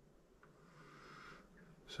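Near silence: quiet room tone with a faint breath about a second in.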